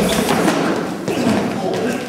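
Thuds of two men scuffling and going down onto a wooden floor in a brawl, with voices shouting over it.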